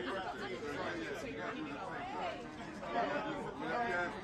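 Chatter of several people talking at once, voices overlapping with no single clear speaker.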